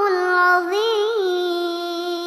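A girl's solo voice reciting the Quran in the melodic chanted style, drawing out one long held note with a short wavering ornament about a second in, then slowly fading.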